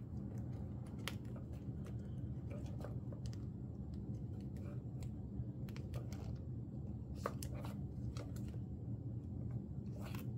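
Sleeved photocards being flicked through and pulled from a card storage box: scattered soft clicks and plastic rustles over a steady low hum.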